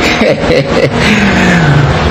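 A man's laughter, trailing off into one long sound that falls in pitch.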